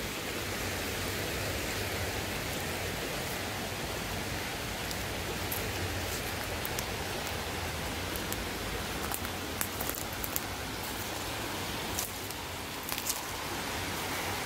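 Creek water rushing steadily over rocks, the creek running high after rain. Scattered light crunches of footsteps on leaf litter and twigs, mostly in the second half.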